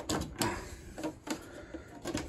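Several sharp clicks and taps spread over two seconds, from fingers handling a plastic RC truck body shell and working its body clips.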